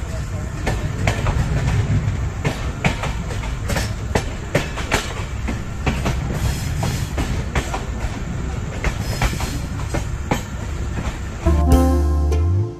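Passenger train running, heard from an open coach window: a steady rumble with many irregular clacks as the wheels clatter over the rails. Music comes in near the end.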